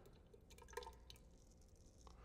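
Faint, short wet scrapes of a 5/8-inch carbon-steel round-point straight razor cutting through lathered stubble on the cheek, a few in quick succession about half a second to a second in.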